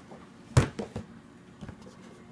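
A plastic gallon jug knocks once on a wooden table about half a second in, followed by a few lighter plastic clicks and taps as it is handled.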